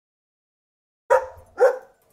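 A dog barking twice, the barks about half a second apart, starting about a second in.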